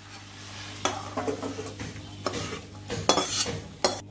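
Several short scrapes of a metal spatula stirring in a steel pan, over a faint sizzle and a steady low hum.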